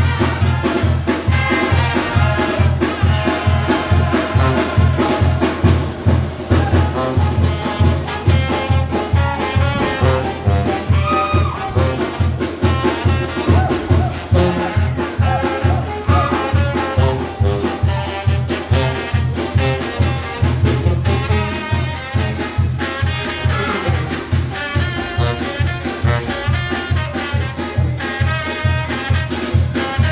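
Mexican village brass band (banda de viento) playing dance music live, trumpets and trombones carrying the tune over a steady, driving bass beat.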